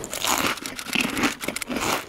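A rapid, irregular crinkling and crackling noise made of many quick clicks.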